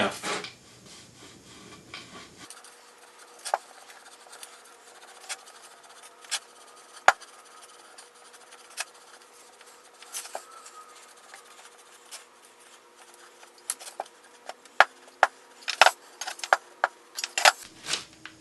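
A household clothes iron rubbed along heat-activated veneer edge banding on a round MDF disc, melting the banding's glue. It makes a faint rubbing with scattered light clicks and knocks, which come more often near the end.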